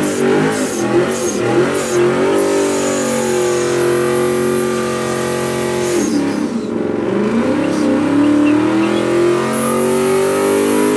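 Ford Mustang doing a burnout: the engine is held at high revs while the rear tyres spin in the smoke. The revs bounce at first, settle into a steady high pitch, dip about six seconds in and climb back up.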